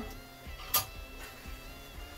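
A silicone spatula stirring risotto in a frying pan: one short sharp scrape about 0.75 s in, then a few soft ticks, under quiet background music.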